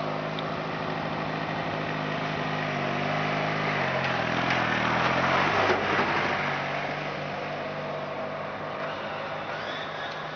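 Riding lawn mower engine running as the mower drives toward and past, loudest about halfway through, its pitch dropping as it goes by. It then runs on more quietly as the mower moves away.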